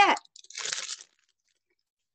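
Plastic craft packaging crinkling as it is handled open, one short burst of under a second.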